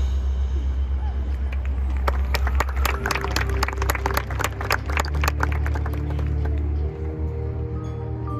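Marching band holding a sustained low brass chord, with spectators close by clapping for a few seconds in the middle. Toward the end, new held notes enter over the low chord.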